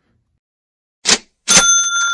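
An edited-in sound effect: a short whoosh about a second in, then a bright bell ding that rings on for about a second, marking a card-value price graphic.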